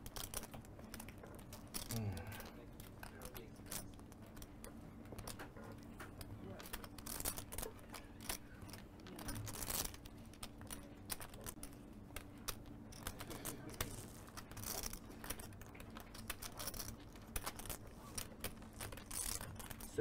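Poker chips clicking against each other as they are handled and shuffled in the fingers at the table: irregular light clicks throughout.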